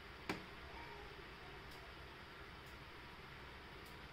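A single small click as the bind button on the glider's internal receiver is pressed, then faint room hiss with a few very faint ticks.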